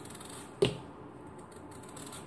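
Knife slicing a thick round off a raw potato held in the hand, quiet cutting with one sharp click a little over half a second in.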